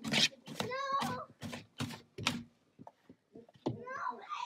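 A young child's high-pitched squealing and laughing in short bursts, falling away after about two and a half seconds to a few faint clicks.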